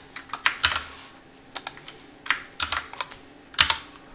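Typing on a computer keyboard: uneven clusters of keystrokes with short pauses between them, over a faint steady low hum.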